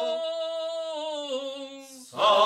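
Unaccompanied male voices of an Alentejo cante group holding a long sung note at the end of a phrase. Near the middle the note steps down in pitch, then fades away before the end.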